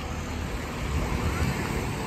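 Low engine rumble of a passing vehicle, growing louder about a second in.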